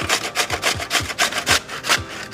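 Raw potato grated on a stainless steel box grater: quick, even scraping strokes, about four a second.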